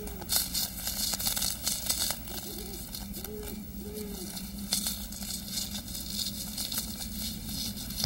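Owl hooting softly in a few short, arched calls, over intermittent crackling and rustling clicks.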